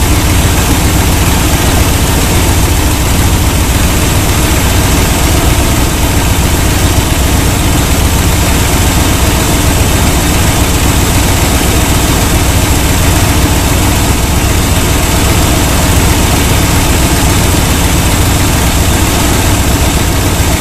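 Chevy engine idling steadily as it warms up from cold.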